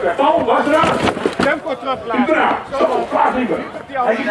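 Talking and calling voices over crowd noise, with a few sharp knocks about a second in.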